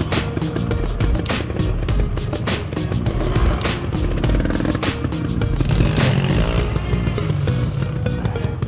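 Background music with a beat laid over off-road motorcycle engines running.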